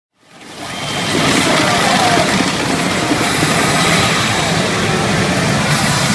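Pachinko machine playing a loud, steady rushing sound effect during a screen transition, fading in over the first second.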